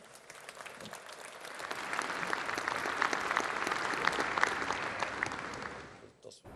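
Large seated audience applauding, the clapping swelling over the first two seconds, holding, then dying away near the end.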